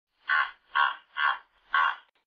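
Hippopotamus honking: four short, hoarse honks in a quick series about half a second apart.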